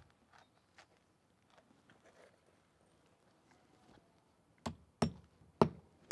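Claw hammer driving a roofing nail through an asphalt shingle and drip edge: three sharp strikes about half a second apart near the end, after a few seconds of faint handling ticks.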